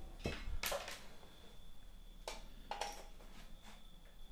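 Light handling noise: a few faint clicks and knocks of small hard objects being moved about on a work table, two close together near the start and a few more in the second half.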